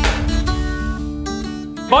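Background film-score music: a guitar strummed once, then plucked notes changing over a steady low bass.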